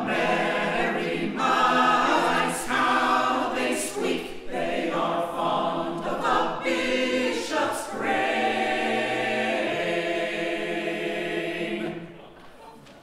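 Mixed-voice a cappella choir singing the closing phrases of a Victorian madrigal, ending on a long chord held from about eight seconds in and cut off sharply at the end.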